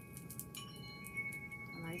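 Several chime-like tones ringing on steadily at different pitches, with light scattered clicking of beads and charms on a memory-wire bracelet being handled.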